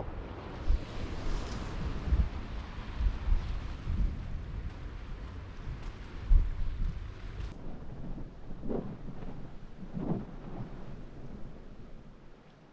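Wind buffeting the camera microphone: a gusty, uneven low rumble with a hiss of noise over it, easing a little after about seven seconds.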